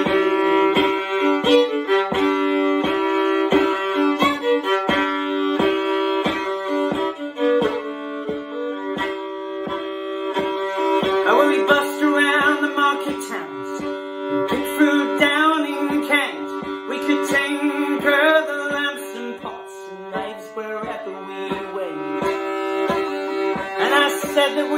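Instrumental break in a folk song: a fiddle melody over sustained drone notes and a steady plucked-string beat of about two strokes a second. The fiddle line wavers most clearly around the middle.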